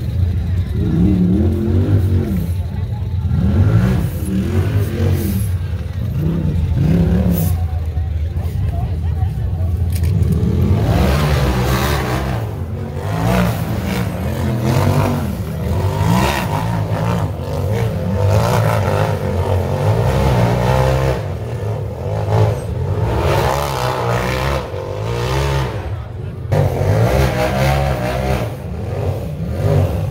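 UTV engines revving hard and rising and falling in pitch as a side-by-side works up a steep rock climb, over the chatter of spectators' voices.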